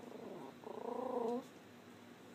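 Yorkshire terrier vocalizing: a short falling whine, then a louder, wavering whine held for under a second that stops abruptly.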